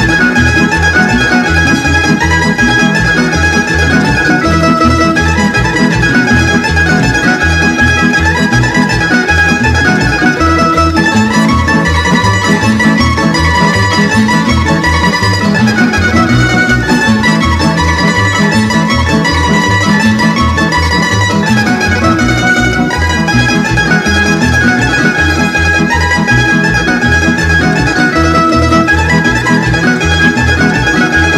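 Lively folk dance music: violin carrying the melody over plucked string instruments, driven by a fast, even bass beat.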